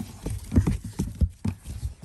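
Irregular soft knocks and scuffs against a large cardboard box, about a dozen in two seconds.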